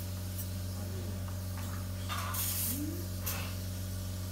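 Steady electrical hum of operating-room equipment with a few short hisses, the longest about two and a half seconds in.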